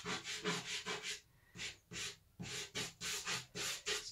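Pastel stick rubbed across textured pastel paper in quick, short scratchy strokes, about three to four a second, with a couple of brief pauses.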